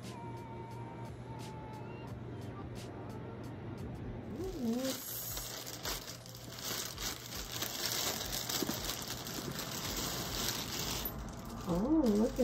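A clear plastic bag crinkling and rustling as a leather backpack is pulled out of it and unwrapped. The crinkling starts about four seconds in and stops shortly before the end.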